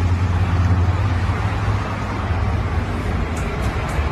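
Background traffic noise: a steady low rumble with a broad hiss.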